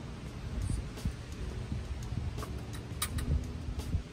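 A few light clicks and taps of a paintbrush against a metal paint can as the brush is loaded, over a steady low rumble.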